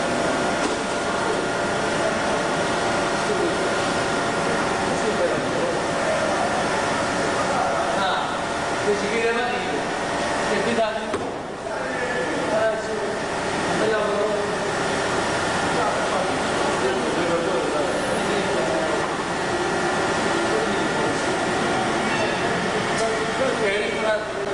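Indistinct chatter of several voices over a steady hum with a few constant tones; clearer snatches of talk come through about a third and halfway in, and again near the end.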